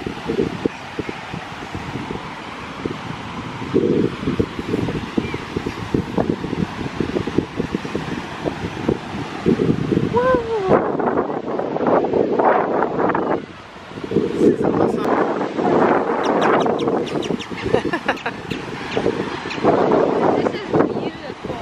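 Wind buffeting the microphone over the wash of surf. About halfway through, voices start talking indistinctly.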